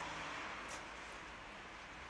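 Steady outdoor street background noise, an even hiss with no single clear source, with a faint tick about three-quarters of a second in.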